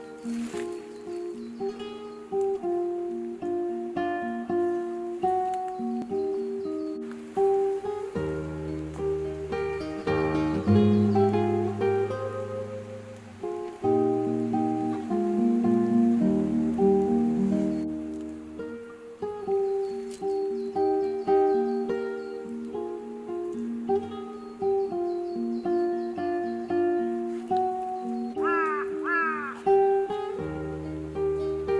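Background music played on plucked strings, a gentle melody with a low bass part that comes in about eight seconds in and drops out near the twentieth second. A few short rising chirps sound near the end.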